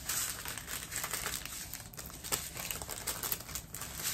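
Small clear plastic bags of diamond-painting drills crinkling irregularly as they are handled.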